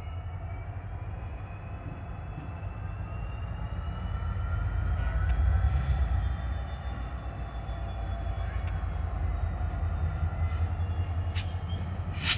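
Pair of Norfolk Southern diesel locomotives approaching slowly on a yard track. Their engines make a deep rumble that swells to its loudest about halfway through, with a faint high whine over it that rises slightly in pitch and then falls. A single sharp click comes near the end.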